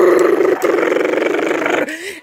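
A person making a long rolled "brrr" sound with the voice, a steady buzzing rattle at one pitch, held for about two seconds before it cuts off near the end.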